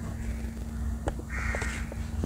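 A bird gives a single short, harsh call about one and a half seconds in, over a faint steady hum.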